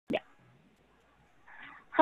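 A single short pop just after the start, then near silence with a faint soft noise in the second half.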